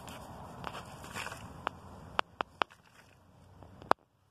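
Hands pressing and crumbling loose soil around a seedling in a small plastic bucket, a soft rustle, with about five short sharp clicks in the second half.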